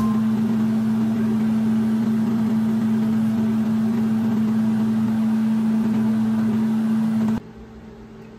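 Pork pieces deep-frying in hot oil in a small saucepan, a steady sizzle with a steady low hum underneath. It cuts off suddenly near the end.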